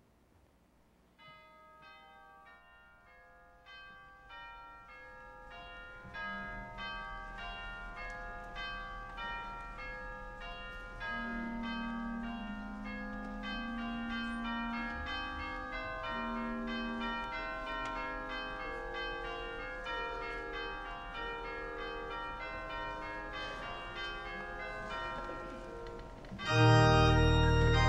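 Bell tones ringing in quick, overlapping succession, many pitches layered over one another. They start softly about a second in and build steadily louder and denser.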